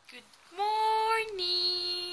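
A woman's voice singing one long drawn-out note, stepping down a little in pitch about halfway through.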